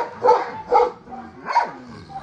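A dog barking four times in quick succession, with a deep, bass voice.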